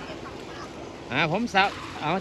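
Faint outdoor background noise, then a man's voice speaking Thai from about a second in.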